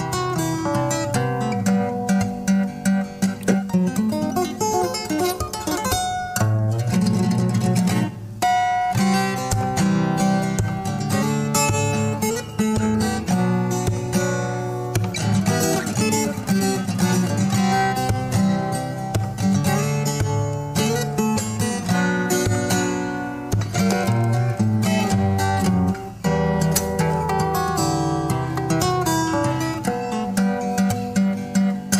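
Solo fingerstyle steel-string acoustic guitar playing without pause, a plucked melody over a bass line.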